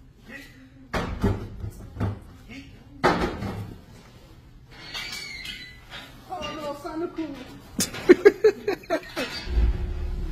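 Boxed toy figures are thrown into a trash compactor's metal chamber, landing with knocks about one, two and three seconds in. The compactor's steel loading door is then shut and its latch rattled. Near the end the compactor's motor starts with a low hum.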